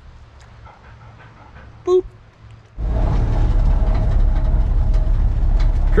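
Quiet at first, with one short spoken "boop". Then, a little under three seconds in, the steady low rumble of a 1967 Chevy pickup driving, heard from inside the cab while towing a trailer, cuts in suddenly.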